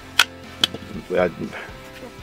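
Two sharp metallic clicks about half a second apart as a pistol magazine is pulled from the grip of a Smith & Wesson Shield.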